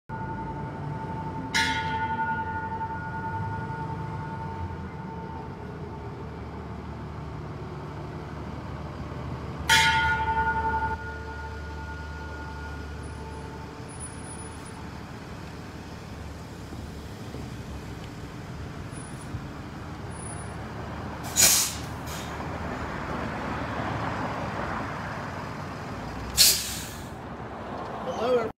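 Tourist trolley bus idling with a steady low rumble. Two sharp strikes leave ringing tones that fade over a few seconds, and two short hisses of air come near the end.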